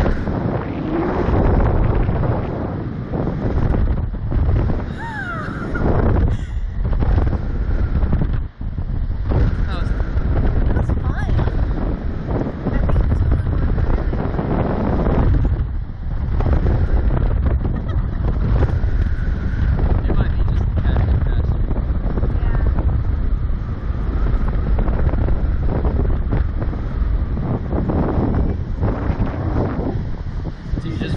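Heavy wind rushing and buffeting the onboard microphone of a SlingShot catapult ride as the rider capsule swings and tumbles at speed, with a few brief cries from the riders.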